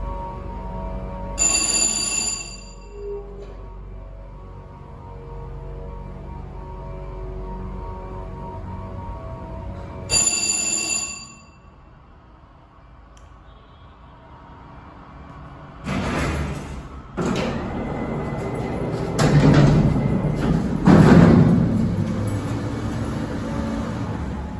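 Hydraulic freight elevator travelling with its pump motor running in a steady hum, a chime sounding twice, about a second and a half in and about ten seconds in. After about twelve seconds the car stops and the hum drops away. From about sixteen seconds the freight doors and gate open with loud rattling and banging.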